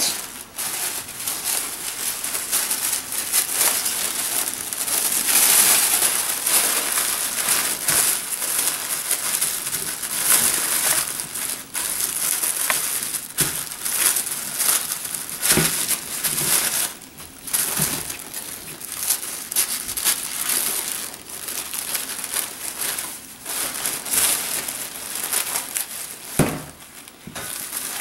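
Tissue paper crinkling and rustling in irregular bursts as hands crease it into folds and press it flat onto glued paper.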